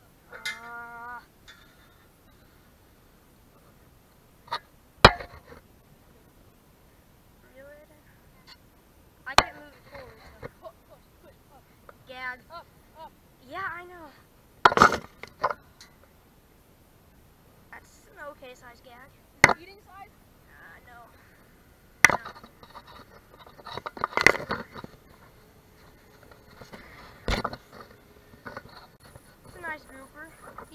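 A drop net being lowered and hauled up on its rope by hand, with sharp knocks every few seconds and faint voices in between.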